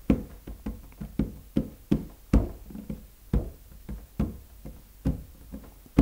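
Fingers tapping a wooden workbench through a mesh mat: a string of short knocks, about three a second, fairly even.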